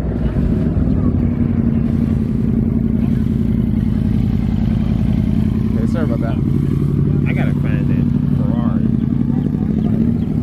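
Motorcycle engine running steadily at low revs as the bike rolls slowly past at walking pace.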